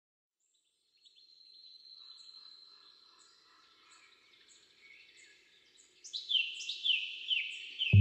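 Birdsong fading in after about a second of silence: faint high chirping at first. From about six seconds, louder short falling whistled notes, about three a second.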